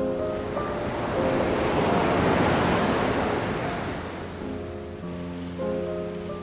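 Ocean surf washing in, swelling to a peak a couple of seconds in and then fading away, over soft background music with held notes.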